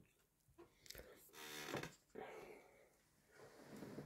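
Near silence with a few faint breaths from a man, one of them a short voiced hum about a second and a half in.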